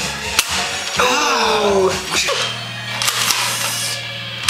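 Sharp clicks from a Nerf blaster's mechanism as it is cocked and fired, with a drawn-out falling vocal cry between them.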